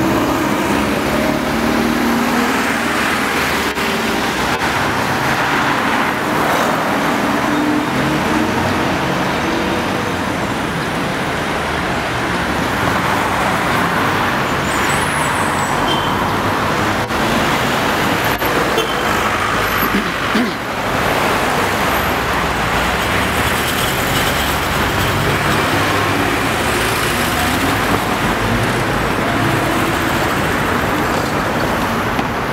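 Steady city traffic noise: cars and other vehicles driving along the street, an even wash of engines and tyres with a brief lull about twenty seconds in.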